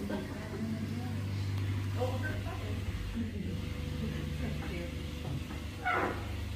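A small tour boat's motor humming steadily as the boat moves along an underground river, with brief murmured voices from the passengers.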